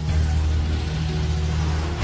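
Background score with a steady low drone, overlaid by a rushing hiss that lasts about two seconds and cuts off sharply at the end.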